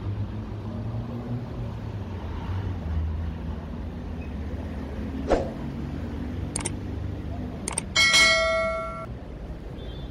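Steady low rumble of road traffic passing, with a few sharp clicks. About eight seconds in comes one loud metallic clang that rings for about a second.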